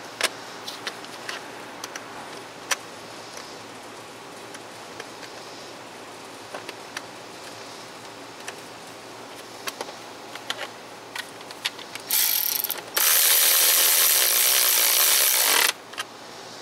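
Scattered light metallic clicks of hand socket work, then a cordless electric ratchet runs, briefly about twelve seconds in and again steadily for about three seconds, driving in an engine-cover mounting stud.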